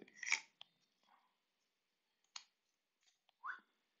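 Mostly quiet, with a few faint, sharp clicks from a Light My Fire FireKnife by Morakniv being handled as its firesteel is pulled out of the back of the handle. A brief squeak comes near the end.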